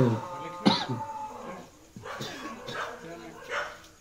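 People's voices, with a short sharp sound a little under a second in.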